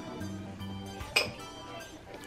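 A metal spoon clinks once against a glass dessert cup about a second in, over quiet background music.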